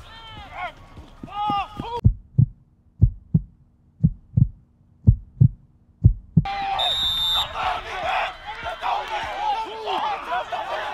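Heartbeat sound effect, paired lub-dub thumps about once a second over a low hum, with the field sound cut away. It stops about six seconds in.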